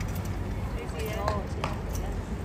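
Background voices: people talking briefly, over a steady low outdoor hum, with a few faint clicks.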